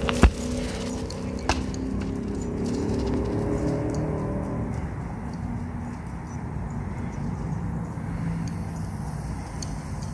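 A motor vehicle passing, its engine drone wavering and fading over the first few seconds over a steady low rumble. Two sharp knocks sound, one just at the start and one about a second and a half in.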